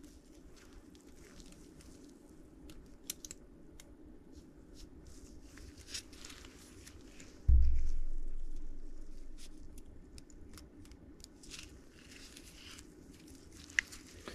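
Faint handling sounds of a steel oil control ring rail being worked onto a piston by hand: small scattered clicks and the rustle of nitrile gloves. One dull low thump about seven and a half seconds in is the loudest sound.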